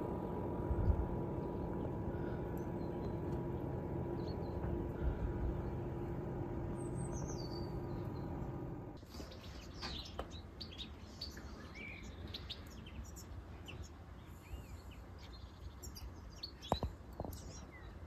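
Wild birds chirping and calling in short, scattered notes. For the first half they are faint under a steady low hum and rumble. That hum cuts off abruptly about halfway, leaving the birds over a quieter background, with one sharp click near the end.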